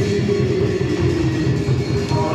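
Group devotional chanting with a held sung note over a steady hand-drum beat.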